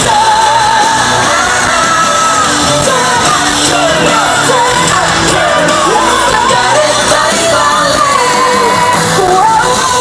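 Loud live pop music over a stadium PA, with a singer's voice carrying a wavering melody, heard from within the audience with fans shouting along.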